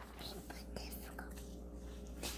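Thin Bible pages being turned by hand: a soft papery rustle with a few faint flicks.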